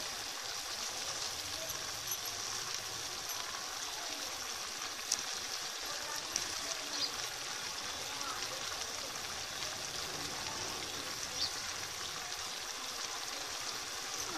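Chicken pieces and grated ginger boiling in water in a pot on a gas stove: a steady bubbling hiss, with a couple of faint taps.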